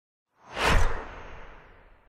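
A logo-reveal whoosh sound effect: it swells in about half a second in, peaks sharply, then fades with a low rumble and cuts off suddenly.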